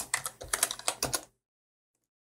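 Computer keyboard typing: a quick run of about ten keystrokes that stops a little past a second in.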